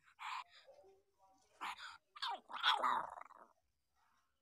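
Week-old puppies whimpering: a few short squeaks, then a longer, louder whine with bending pitch about two to three seconds in.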